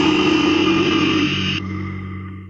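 Heavy metal band recording from a 1993 demo tape: a dense wall of distorted guitars and drums that stops about three-quarters of the way in, leaving a low held note ringing out as the song ends.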